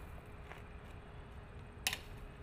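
Faint low background noise with a thin steady hum, and one sharp click near the end.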